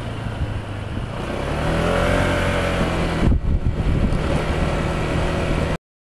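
Car engine and road noise heard from inside the cabin, the engine note rising as the car accelerates about a second and a half in. A single thump a little past the middle, then the sound cuts off abruptly near the end.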